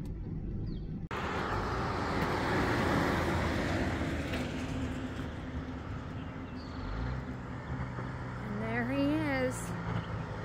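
Freightliner semi-truck pulling a loaded flatbed trailer approaches along the road, its diesel engine sound building, with a steady engine tone from about seven seconds in.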